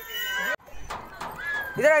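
Children's and family voices talking, broken by an abrupt cut about a quarter of the way in; near the end a high, wavering voice starts calling out.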